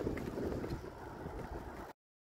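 Wind rumbling and buffeting on the microphone during a bicycle ride on a paved trail, fading a little and then cutting off abruptly just before the end.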